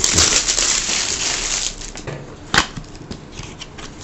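Clear plastic shrink-wrap crinkling as it is peeled off a cardboard box, loudest in the first second and a half. Then softer rustling and handling of the cardboard box, with a sharp tap about two and a half seconds in.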